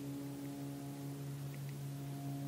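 A steady low hum made of several held tones, unchanging throughout.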